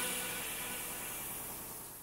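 Gravity-feed air spray gun hissing as it sprays paint onto a car's hood, the hiss fading out steadily toward the end.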